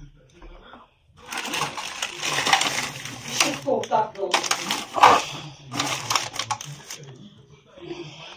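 Plastic carrier bags and a stiff plastic sheet rustling and crinkling as they are handled and stuffed into a bag, with many sharp crackles, starting about a second in and dying down near the end.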